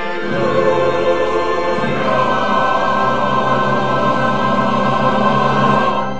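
Church choir singing with accompaniment, moving to a new chord about two seconds in and holding it until it cuts off near the end as the piece finishes.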